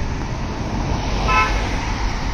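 A short vehicle horn toot a little over a second in, over the steady low rumble of road traffic.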